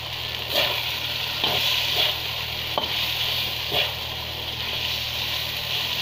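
Stingray in spice paste sizzling steadily in an aluminium wok, with a metal spatula stirring and scraping the pan about five times in the first four seconds.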